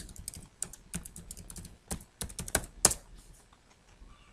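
Computer keyboard being typed on, a run of quick, irregular key clicks as a password is entered, with one louder keystroke nearly three seconds in.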